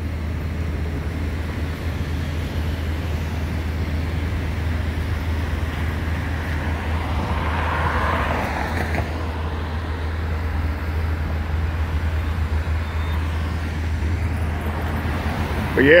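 Street traffic noise under a steady low rumble, with a vehicle passing about halfway through, swelling and then fading.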